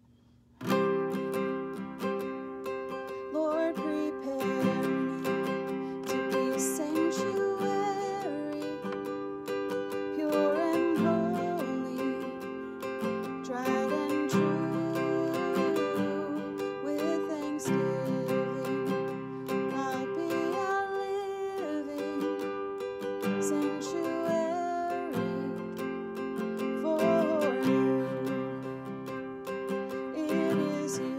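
Nylon-string classical guitar capoed at the fifth fret, strummed in a steady down-up pattern through G, D and C chord shapes, opening on a held G chord. The strumming starts about half a second in.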